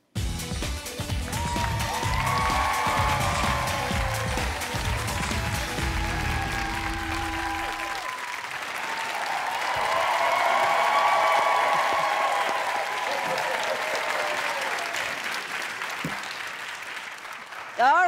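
Studio audience applauding and cheering over a music sting with a beat; the bass of the music stops about halfway through, and the cheering swells a little after.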